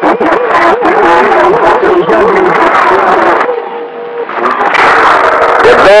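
Radio transmissions heard through a communications receiver's speaker: a wavering, warbling tone over noisy, garbled signal for the first two seconds, then a steady whistle-like tone a little later before the noisy signal returns.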